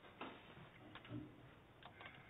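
Near-silent room with a few faint, scattered clicks and a soft knock, small handling noises.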